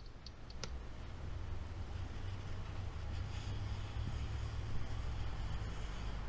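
Oil being wiped onto barbecue grill bars with a paper towel: a soft, steady rubbing with a few light clicks about half a second in, over a steady low rumble.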